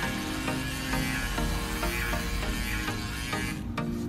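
Women's wet/dry electric shaver buzzing as it is run over a hairy leg, stopping near the end. Background music plays throughout.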